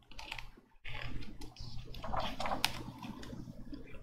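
Pages of a hardcover picture book being turned and handled: soft paper rustling with light clicks and ticks, over a low steady hum.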